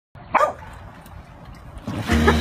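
A large dog barks once, a short loud bark about a third of a second in, over low background hiss. Just before the end comes a splash of water as a dog jumps onto a pool float.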